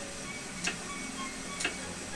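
Wooden spinning wheel turning slowly, giving two sharp clicks about a second apart, over faint background music.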